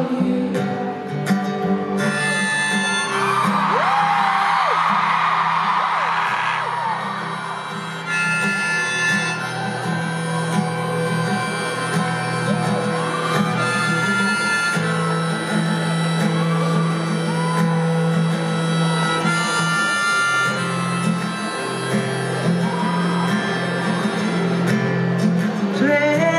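Live performance of a ballad, with acoustic guitar and voice heard from the audience in an arena, through a wordless stretch of the song. A few seconds in, the crowd's cheering rises over the music and then fades.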